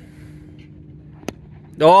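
Cricket bat striking the ball: one sharp crack a little over a second in, over quiet open-air background with a faint steady hum.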